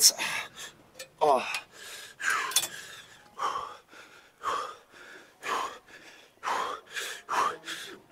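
A man gasping and panting for breath, about one heavy breath a second, one of them about a second in coming out as a voiced groan: winded from a high-rep leg extension drop set.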